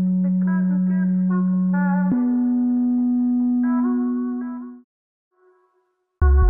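FL Studio beat playback: an 808 bass note in a raised octave holds one pitch, then steps up to a higher note about two seconds in. Above it runs a chopped, EQ-filtered, reverb-soaked sample whose notes keep changing. Everything fades out just before five seconds.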